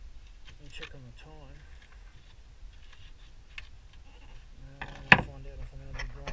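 Hand tool scraping and prying at rotten timber and fibreglass in a boat's bow stringer, with scattered small clicks and one sharp knock about five seconds in. A wavering, bleat-like voice sounds about a second in and again near the end.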